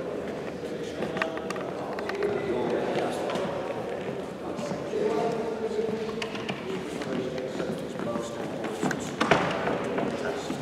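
Echoing indoor hall with indistinct background chatter and the quick footsteps of people running in trainers on the court floor, with scattered short clicks and squeaks. A sharp thump stands out about nine seconds in.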